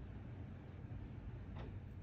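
Quiet steady low hum of the room with one faint click about one and a half seconds in, from a red plastic refill nozzle and brass torch refill valve being handled in the fingers.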